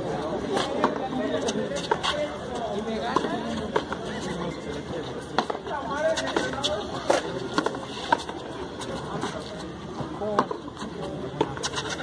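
Frontón ball being struck by gloved hands and slapping off the wall and floor during a rally: irregular sharp smacks a second or more apart, over people talking around the court.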